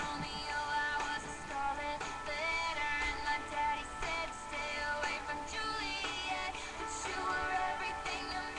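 A young girl singing a pop song along with its recorded music, the sung melody running over a steady backing track.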